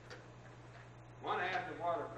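A man's voice speaking from about a second in, over a steady low hum.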